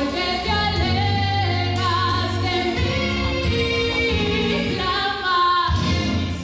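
A woman singing a gospel song solo into a microphone, over instrumental accompaniment with held low bass notes that change a few times.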